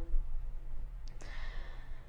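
A woman's audible breath between sentences: a small mouth click about a second in, then a soft airy breath, over a low steady hum.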